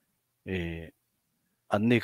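Only speech: a man talking over a video call, a brief drawn-out vocal sound about half a second in, a pause, then talking again near the end.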